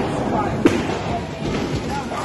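A single sharp thud about two thirds of a second in, a released bowling ball striking the wooden lane, over the steady chatter of a busy bowling alley.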